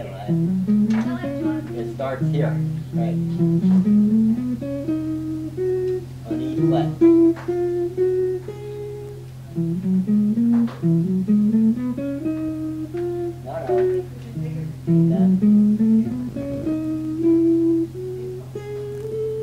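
A guitar playing single notes in slow rising scale runs, about four runs one after another, over a steady low hum.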